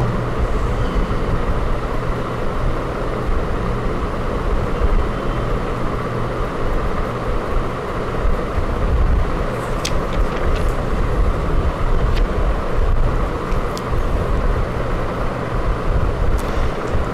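Steady low rumble and hiss of background noise with a low hum running through it, and a few brief clicks about ten and twelve seconds in.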